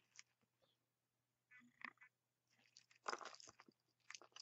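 Near silence with faint clicks and clinks of small metal charms on a chain being handled, a short cluster of them about three seconds in.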